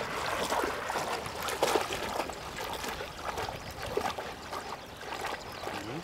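Shallow river water sloshing and splashing irregularly close to the microphone, stirred by a golden retriever wading through it.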